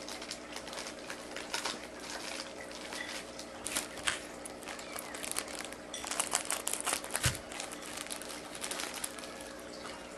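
Plastic packaging crinkling and rustling in the hands as a small bagged item is handled and opened, in short irregular spells that are busiest about four seconds in and again around six to seven seconds.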